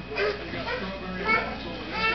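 A baby's short babbles and vocal sounds, with a brief higher-pitched sound a little past the middle, mixed with faint adult voice.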